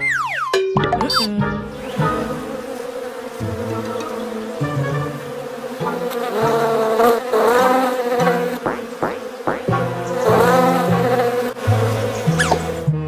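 Cartoon sound effect of bees buzzing, a steady drone that runs on over background music.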